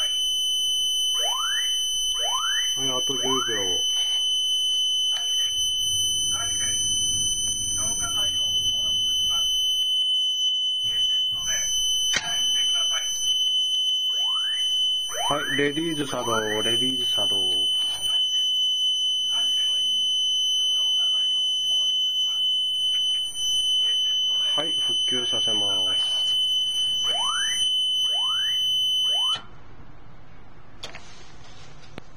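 Gas fire-suppression system pre-discharge alarm sounding while the release delay timer counts down: a continuous high electronic buzzer tone, with rising siren sweeps and a voice message repeated three times over it. The buzzer tone cuts off suddenly near the end as the timer reaches zero.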